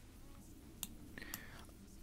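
Two faint sharp clicks of a computer mouse, one a little under a second in and another about half a second later, with a short soft breathy voice sound between them, over low room tone.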